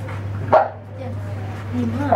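A single short, sharp call, a bark or a shout, about half a second in, over faint murmuring voices and a steady electrical hum.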